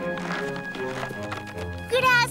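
Cartoon background music, with a low line of notes stepping downward and a few light taps.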